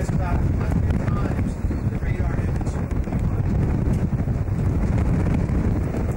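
Wind buffeting the microphone as a steady low rumble, with faint voices in the background.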